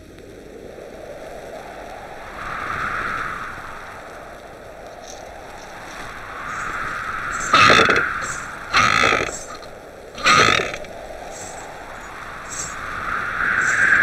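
Film sound effect of wind blowing in slow whooshing swells, broken in the middle by three sudden loud bangs a little over a second apart.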